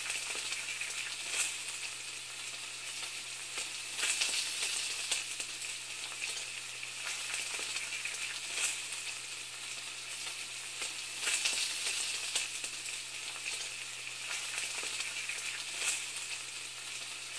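A steady crackling sizzle with a few louder swells of crackle, over a low steady hum.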